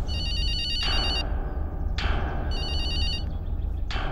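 A mobile phone ringing with a warbling electronic ringtone, in two rings about a second long each, the second starting about two and a half seconds in.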